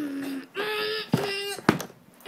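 A child humming three short held notes without words, with a sharp click of toy handling near the end.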